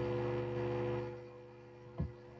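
Steady electrical hum made of several constant tones, fading away about a second in.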